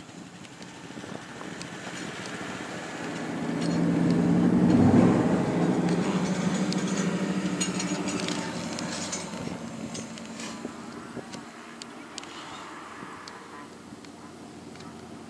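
A vehicle engine running. Its sound swells to a peak about five seconds in, then slowly dies away.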